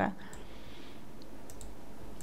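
A few faint, scattered clicks of computer controls over a steady low hiss.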